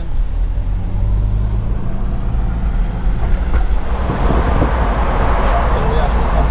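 Toyota SUV driving, heard from inside the cabin: a steady low engine drone with road noise. About four seconds in a louder rush of tyre and road noise joins it.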